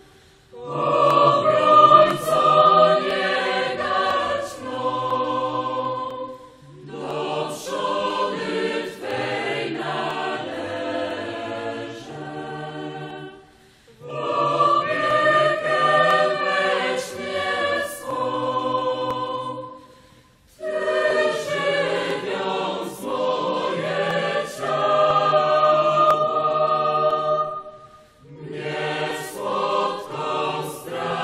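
A mixed youth choir singing a hymn in phrases of about seven seconds, with short breaks between them.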